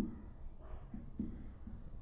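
Marker pen writing on a whiteboard: a run of short, faint strokes as letters are written, the first the loudest.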